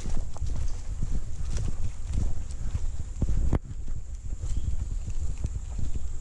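Footsteps of a hiker walking at a steady pace on a dirt and leaf-litter forest trail, with low rumble from movement on the microphone. A faint steady high insect drone runs underneath.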